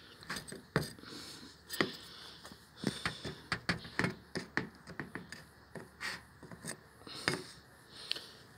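Handling of a plastic hive debris tray: irregular light clicks, taps and rubbing as the tray is held and tilted over the wax crumbs.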